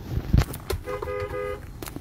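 A car being bumped by another vehicle: a jolt of low knocks in the first half-second, then a car horn honking once for under a second.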